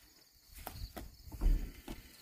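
Light knocks and scuffs as a steel trailer wheel and its tire are tipped onto the hub, with a dull low thump about a second and a half in.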